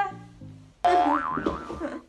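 A sudden wobbling, boing-like sound effect with a wavering pitch, lasting about a second, starts just under a second in over background music with a stepped bass line.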